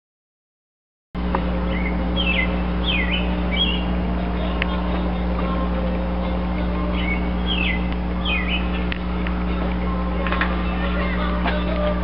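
Silence for about a second, then a steady low machine hum with small birds chirping over it, a few chirps near the start and again past the middle.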